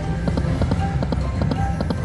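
Dancing Drums video slot machine spinning its reels: the game's music with a quick, even tapping beat of about three or four strokes a second and short chime notes.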